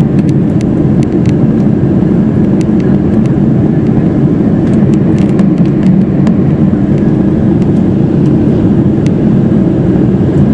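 Steady, loud cabin noise inside a Boeing 747 in flight: a constant low rumble of engines and airflow, with a few faint clicks.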